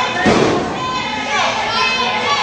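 A single heavy thump about a quarter second in, a wrestler's body hitting the ring mat, over a crowd's voices and shouts in a large hall.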